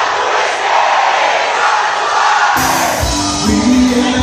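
Live Celtic rock band stops for a moment while the crowd shouts and cheers, then comes back in with drums and bass about two and a half seconds in.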